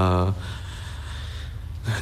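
A man's voice gives a short voiced sound, then draws a long, audible breath through a pause lasting about a second and a half.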